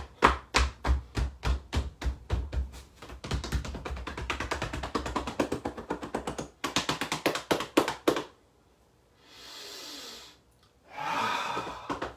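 Rapid hand slaps on the body over clothing, about four or five a second: qigong meridian tapping down the hips and legs. The slapping stops about eight seconds in, and a soft hiss follows a second later.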